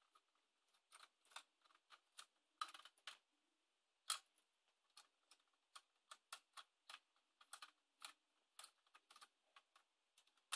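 Faint, irregular small clicks and ticks, dozens of them, from a screwdriver and fingers working the plastic battery cover screw on the Nerf Firestrike blaster's laser grip.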